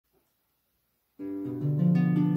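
Celtic harp beginning to play: silence for just over a second, then plucked low notes come in one after another and ring on together.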